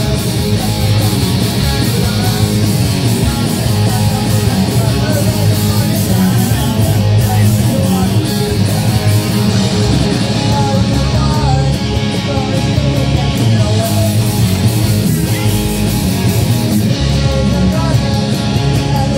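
Live rock band playing a loud punk-rock song: electric guitars, bass guitar and a drum kit playing together without a break.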